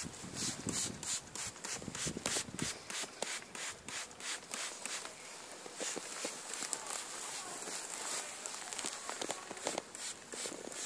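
Water sprayer misting a bee swarm: a quick run of short hissing spritzes, about four a second for the first few seconds, then sparser and irregular.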